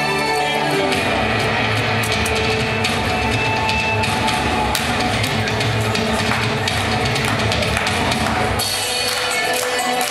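Recorded Irish dance music playing, with a driving drum beat under sustained melody; the drumming drops away about eight and a half seconds in.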